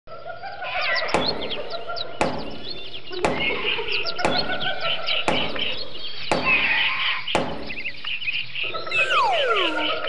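An axe chopping into a tree trunk: seven sharp strokes about a second apart, over birdsong. Near the end, a descending whistle sounds for a falling object.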